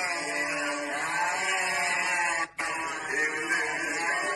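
Men's voices singing or chanting together in a continuous line. The sound cuts out for a moment about two and a half seconds in.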